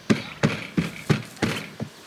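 Young turkeys in and around a plastic pet carrier as they are lifted out, making a run of short, sharp sounds about three a second.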